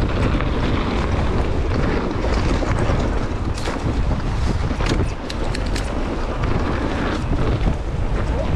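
Wind buffeting the microphone and tyres rolling over a dirt trail as an electric mountain bike rides along forest singletrack: a steady, heavy rumble with a few sharp rattles and clicks from the bike over bumps in the middle.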